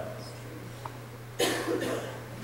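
A short cough about one and a half seconds in, a sharp burst with a quick second push, over a steady low electrical hum.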